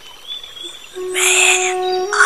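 Soft intro music. After a quiet first second, a single held, flute-like note comes in, with a hissing swell over it.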